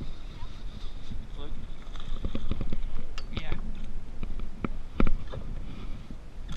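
Clicks and knocks of rod, reel and gear in a canoe while an angler fights a hooked bass, with one loud thump about five seconds in.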